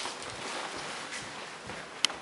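Soft footsteps and shuffling on a hardwood floor, a steady rustle with a few faint knocks.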